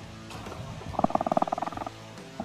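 A freshly landed grouper (lapu-lapu) croaking: a rapid rattling grunt of about a second, starting about a second in, over steady background music.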